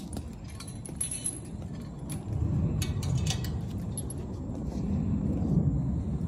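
Metal barrier chain clinking and jingling in short bursts, about a second in and again around three seconds, over a steady low rumble.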